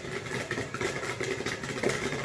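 A small motor or engine running steadily, with a fast, even ticking over a low hum.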